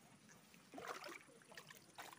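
Shallow stream water disturbed by hand: a brief slosh a little under a second in, then a few faint splashes, over near silence.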